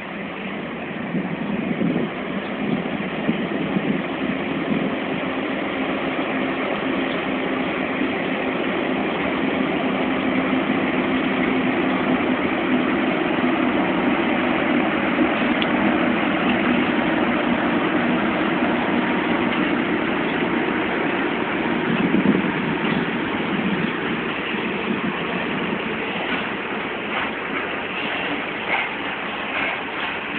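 ET22 electric freight locomotive pulling away and passing close, giving a steady drone with a held hum that grows louder as it goes by. Near the end the open coal wagons roll past, with a few sharp wheel clicks over the rail joints.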